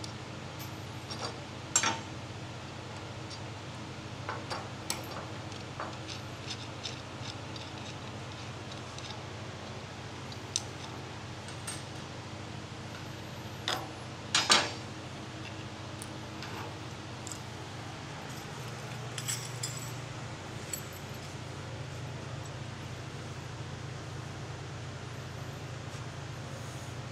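Small steel hardware (bolts, nuts and washers) clinking and clicking against a steel workbench as a bracket plate is taken apart by hand: scattered light metal clicks, the loudest about fourteen seconds in, over a steady low hum.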